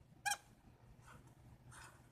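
A marker squeaks briefly on a whiteboard as a line is drawn, then makes two fainter scratchy strokes.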